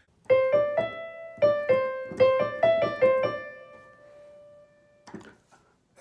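Piano playing a short single-note melody of about ten notes, the last note left to ring out and fade.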